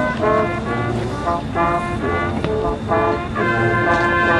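Marching band playing on the field: brass and winds sound a run of short detached chords, then settle into a long held chord near the end.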